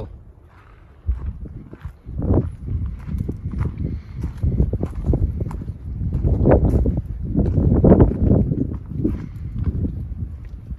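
Gusty wind buffeting the microphone, a low rumble that swells and eases, loudest in two gusts past the middle, with footsteps mixed in.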